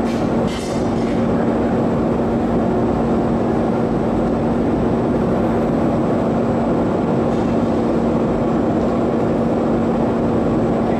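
Glory hole reheating furnace running with a steady burner roar and a constant low hum.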